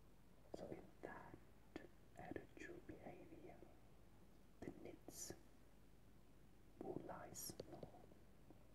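Faint whispering in a few short bursts, with soft mouth clicks and hissed breathy sounds, between stretches of near silence.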